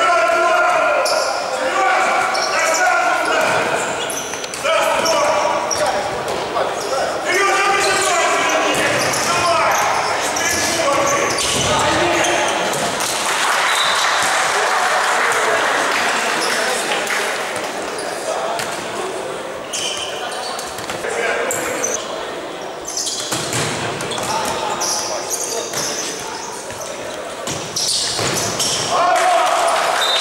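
Futsal match sounds in a large, echoing sports hall: players shouting and calling to one another, with the thuds of the ball being kicked and bouncing on the hard court floor.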